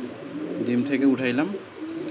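Domestic pigeon cooing, low and wavering, with a man's voice speaking over it.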